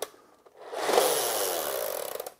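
A Nerf Rev Reaper dart blaster firing as its rear handle is pulled back, spinning its flywheels by hand: a whir starts about half a second in and then winds down, falling in pitch. The handle was pulled back too slowly while aiming, so the shot is weak.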